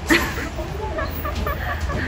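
A woman giggling: a run of short, high-pitched stifled laughs, over a steady low hum of the hall.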